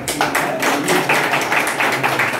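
A small group of people clapping by hand, brisk and irregular.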